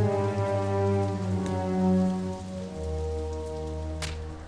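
Heavy rain falling steadily, under sustained low orchestral brass chords that shift to new notes a few times.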